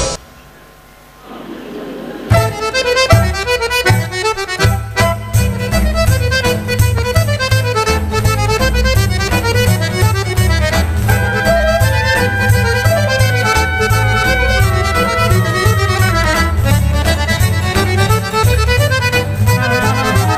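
Accordion and fiddle playing a fast Arbëreshë tarantella over a steady bass beat. The tune begins about two seconds in, after a short lull.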